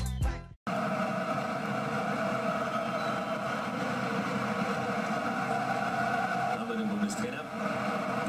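Rap music cuts off abruptly about half a second in, followed by steady football-stadium crowd noise from a television match broadcast.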